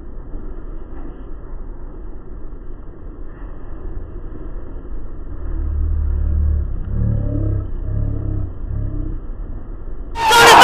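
Low, muffled rumble of a truck engine running, louder from about halfway through, with a few muffled pulses near the end.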